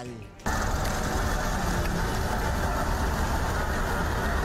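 Steady street-traffic noise cutting in about half a second in: minibus engines running close by, a constant low rumble with no break.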